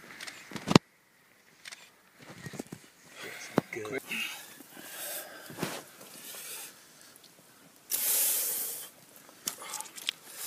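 Handling noise on the bank: a sharp click less than a second in, then scattered rustling, and a loud burst of hiss lasting about a second near the end.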